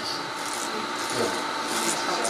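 Handheld microphone rubbing against clothing: a steady scratchy rustle.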